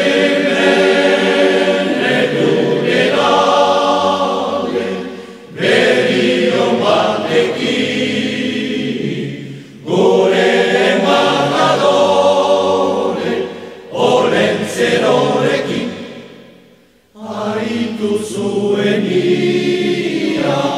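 A choir singing a Basque Christmas song in several long phrases, with short breaks between them.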